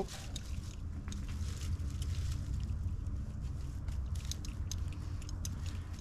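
Climbing rope and metal climbing hardware being handled: scattered small clicks and rustles at irregular moments over a steady low rumble.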